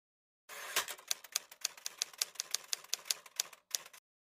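Typing sound effect: a rapid run of keystroke clicks, about seven a second, starting about half a second in, with a brief break near the end before a few more strokes.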